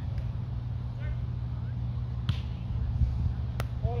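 Volleyball being struck during a sand game: a sharp slap about three and a half seconds in, and a softer one a little earlier, over a steady low rumble.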